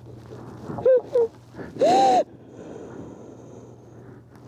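A woman crying while embracing: two short, high-pitched sobbing gasps about a second in, then a louder, longer cry that rises and falls in pitch about two seconds in.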